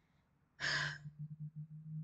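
A woman's sigh: one breathy exhale about half a second in, followed by a faint steady low hum.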